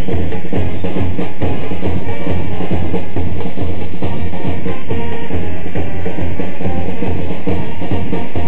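Loud batucada music: bass drums beating a steady rhythm under brass, playing without a break.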